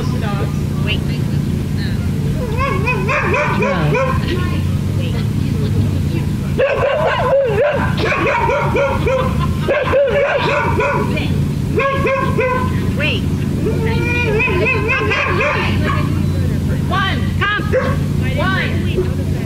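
Dogs yipping and barking in repeated runs of high, rising-and-falling calls every second or two, over a steady low hum.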